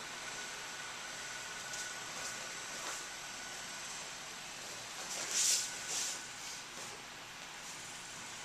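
Steady background hiss with a faint high steady tone, and two brief soft swishes a little past halfway through.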